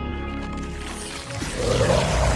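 Dramatic film score with held notes, then a loud monstrous roar from an alien symbiote creature starting about one and a half seconds in.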